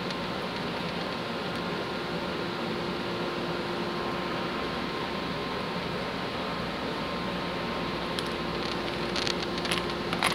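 Steady background hum and hiss, with a few light clicks near the end as small laser-cut wooden parts are popped out of their sheet and dropped on the table.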